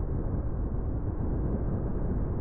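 Steady low rumble of a car driving, road and tyre noise with the engine underneath, even throughout.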